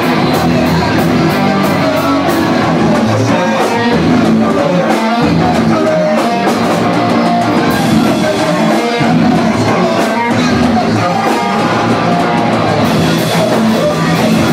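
A rock band playing loudly: guitars and a drum kit, with cymbals struck over and over.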